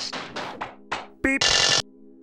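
Cartoon sound effects of the broken beeper gadget being pushed: a run of short knocks and clunks, then, past the middle, a short electronic beep and a loud burst of electronic noise as the beeper works again. A held note of background music runs underneath.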